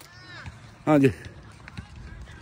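Speech: a man says a single short word about a second in, over a quiet outdoor background.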